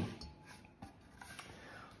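A few faint taps and light scrapes as sliced roast pork is pushed off a wooden cutting board into a ceramic bowl and the board is lifted away.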